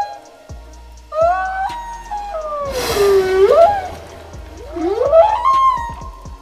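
Humpback whale song: a string of moans and whoops that glide in pitch, with a rising whoop about a second in, a long falling-then-rising moan around the middle with a rushing noise over it, and another rising call near the end.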